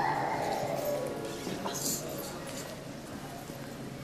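A person's voice holding a long note that falls in pitch, fading over the first second and a half, followed by a few light taps and clinks.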